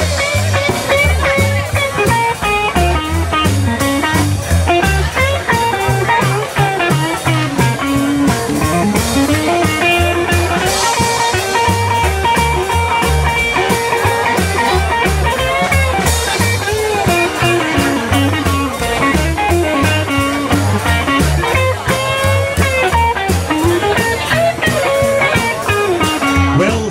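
Live swing band playing an instrumental passage: electric guitar over upright double bass and drums, with a steady beat.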